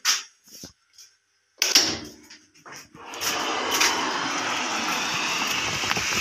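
A thump about one and a half seconds in, then from about three seconds a steady rushing noise: an electric tubewell pump started up and running, with water flowing.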